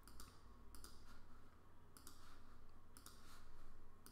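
Computer mouse clicking, a handful of separate quiet clicks spread across a few seconds, as folders and a file are selected in a file dialog.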